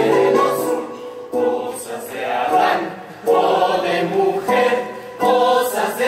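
A chorus of performers singing a show tune together, in short phrases broken by brief pauses.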